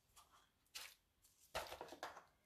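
Faint rustling of paper as a die-cut vellum panel and cardstock are handled and laid on a card, in a few short scrapes, the loudest about one and a half seconds in.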